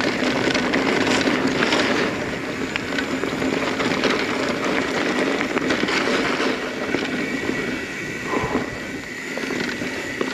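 Mountain bike riding along a dirt singletrack: a continuous rushing noise of the tyres and the ride, with frequent small rattles and knocks from the bike over the rough ground.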